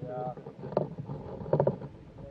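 Indistinct voices talking, broken by two short, loud bursts of noise about a second apart.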